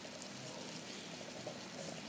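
Fried dumplings sizzling gently in a small amount of oil in a frying pan over a low flame, a steady faint hiss.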